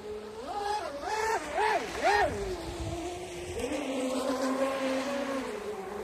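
Twin brushless electric motors of a Minicat 820 EP RC catamaran whining, with four quick throttle bursts rising and falling in pitch, then a steady whine at speed that steps higher about three and a half seconds in and drops near the end.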